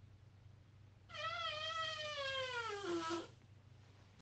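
A long, high-pitched squeaky fart lasting about two seconds. It starts about a second in, slides steadily down in pitch like a creaking door, and cuts off.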